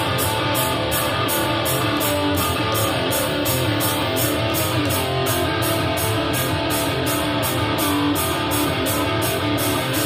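A heavy rock band playing live, with electric guitar over the full band, steady and loud throughout.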